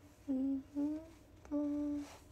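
A young woman humming three short notes, the last one held a little longer.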